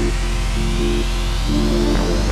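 Electronic dance music built from Native Instruments Indigo Dust samples: a steady deep bass under held synth chords that change every half second or so, with a rising sweep building across it.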